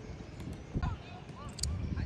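Sound of an outdoor football passing drill: faint, short calls from players across the pitch and a couple of dull ball kicks near the middle.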